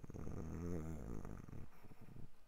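A man's low, drawn-out hum of hesitation, a closed-mouth "mmm" with wavering pitch, lasting under two seconds and stopping shortly before the end.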